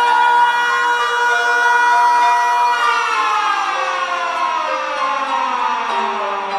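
Synthesizer chord in a techno remix, holding steady notes and then sliding down in pitch together from about halfway through, a siren-like pitch drop.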